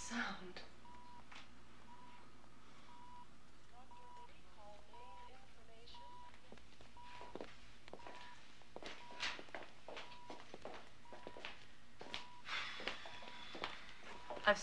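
Hospital patient monitor beeping a short, steady tone at an even pace, a little under twice a second. Sharp steps of high heels on a hard floor come in the second half.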